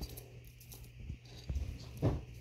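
Quiet handling noise: a few faint clicks and light rustles, a little louder about one and a half seconds in, over a low steady background hum.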